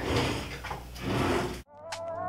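Close rustling and shuffling as someone moves right beside the microphone, ending abruptly. Electronic background music starts near the end.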